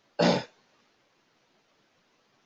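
A man clears his throat once, briefly, a fraction of a second in.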